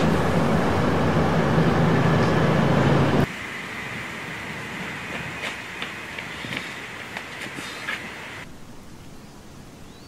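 A train pulling away, its running noise carrying a steady low hum, which cuts off abruptly about three seconds in. A much quieter background follows with a few light footsteps.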